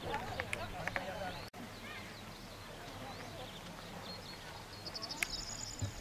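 Outdoor ambience of birds chirping over faint, indistinct chatter of a group of people, with a quick run of high repeated bird notes near the end.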